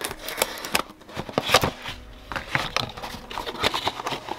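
Cardboard retail box being opened by hand, its flap pried and pulled open: a run of irregular crackles, scrapes and taps of card and paper.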